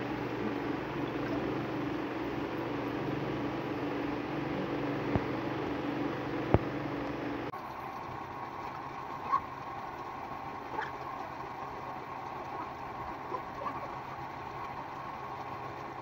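A steady machine hum with a couple of sharp clicks. About halfway through it changes abruptly to a thinner, quieter steady hum with a faint high tone and a few light ticks.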